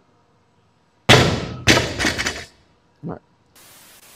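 Loaded barbell with bumper plates dropped from overhead onto a rubber gym floor: a loud crash about a second in, then a couple of bounces and rattling plates dying away over about a second and a half. Near the end, a short burst of TV-static hiss.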